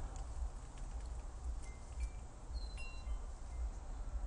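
Faint chimes ringing a few scattered high notes, about the middle, over a low steady rumble.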